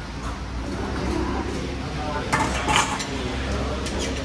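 Kitchen utensils and crockery clinking and clattering at a cooking counter, with the loudest burst of clatter about two and a half seconds in, over a steady low hum.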